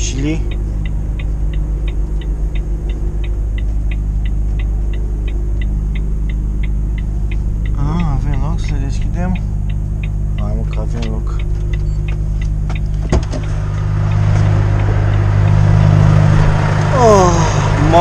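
Truck diesel engine running steadily, heard from inside the cab, with a rapid, regular ticking about three or four times a second. About thirteen seconds in there is a click, and the engine and outside noise then become louder as the cab door opens.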